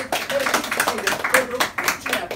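A small audience applauding, a dense run of individual hand claps.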